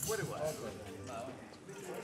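Low, murmured chatter of several people talking in the background after a short 'okay'; no music is playing yet.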